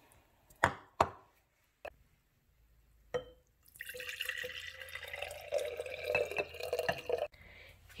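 Rice water poured from a bowl into a glass mason jar: a steady splashing pour of about four seconds that starts about halfway through and stops abruptly, its pitch climbing slightly as the jar fills. Before it come a few sharp knocks.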